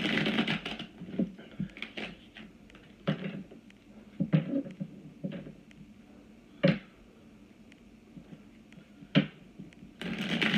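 Tarot deck being shuffled and handled on a tabletop: irregular soft card clicks and light taps, with two sharper knocks in the second half.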